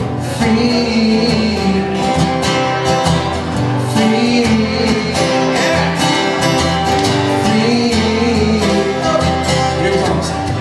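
Two acoustic guitars playing together, strummed steadily, in an instrumental passage between sung lines of a live acoustic song.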